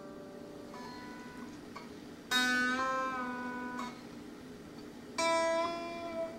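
Unamplified-sounding electric guitar strings (G, B and high E) plucked twice and pulled up in pitch with the whammy bar of a floating tremolo, each chord ringing and fading. The tremolo is not yet fitted with a stabilizer.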